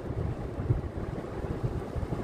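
Low, uneven rumble inside a car cabin, with wind buffeting the microphone.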